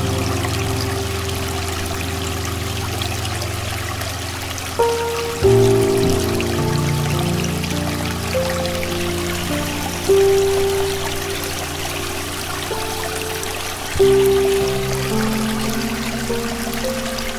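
Piano playing slow, sustained chords, with fresh chords struck three times, each swelling and then fading, over the steady rushing of a stream.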